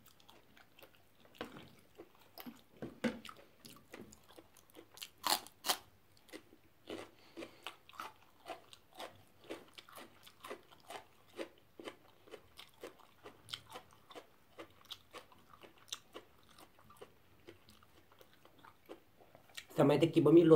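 A person chewing and biting crunchy raw vegetable close to the microphone: irregular crisp crunches, a couple a second, with the loudest bites about five to six seconds in.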